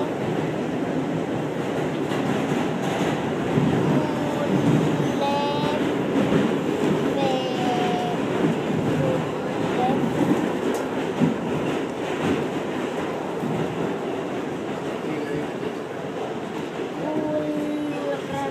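Subway train running, heard from inside the car: a steady rumble and rail noise throughout, with a few short higher-pitched sounds over it. The noise eases off somewhat in the second half.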